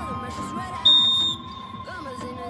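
A single short, high blast of a referee's whistle, about half a second long, signalling the penalty kick to be taken, heard over background music.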